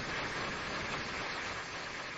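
Steady, even hiss with no speech: the background noise of an old broadcast recording of a large hall.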